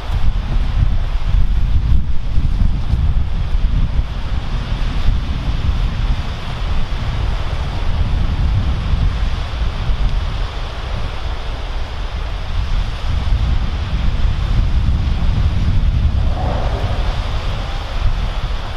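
Wind buffeting the microphone with a heavy, continuous low rumble, over the steady wash of small waves breaking on a sandy shore.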